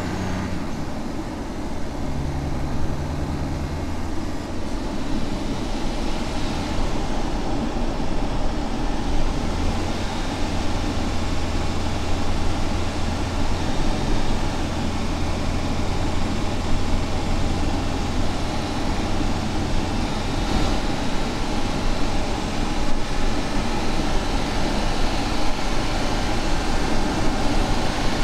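Audi S5 sedan driving along a road: a steady low engine hum over tyre and road noise, the hum fading about two-thirds of the way through.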